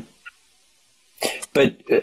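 A man clearing his throat: one short, rough cough-like burst a little over a second in, followed straight away by speech.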